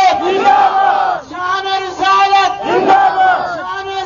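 A crowd of men shouting slogans in unison, with a single voice holding long calls in between, back and forth several times.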